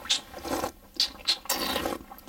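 A wine taster slurping a mouthful of red wine, drawing air through it in several short hissing sucks to aerate it.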